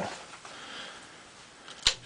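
Faint room hiss, then near the end a single sharp click of a ceiling fan's pull-chain switch being pulled.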